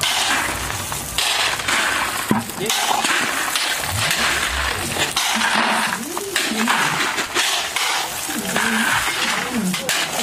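Steel shovels scraping into a pile of loose crushed gravel, the stones rattling and clinking as they are scooped and tipped into plastic buckets, a crunchy scrape about once a second.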